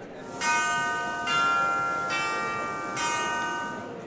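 Closing logo jingle of bell-like chimes: four ringing chords struck about a second apart, each ringing on, then fading out.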